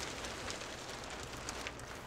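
Soft, crackly rustling of a hanging made of flattened metal bottle caps as it is shifted by hand, with many small clicks.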